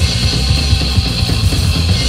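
Recorded hardcore punk from a bass-and-drums duo: distorted electric bass and a drum kit played fast and hard.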